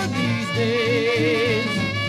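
Trad-jazz band music playing from a vinyl LP on a Dual 1215 turntable with a Shure M44G cartridge, over a steady beat. A wavering held note stands out from about half a second in for about a second.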